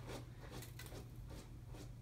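Faint rustling and small handling clicks, as of objects being moved about by hand, over a steady low hum.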